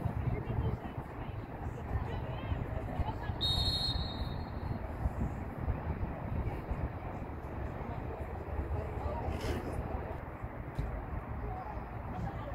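Outdoor sideline ambience of a soccer match: a steady low rumble under faint distant voices, with one short high whistle blast about three and a half seconds in.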